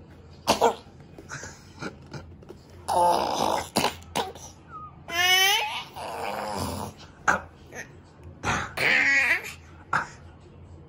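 A baby laughing and squealing in several short, loud bursts, one of them a high, wavering squeal about halfway through.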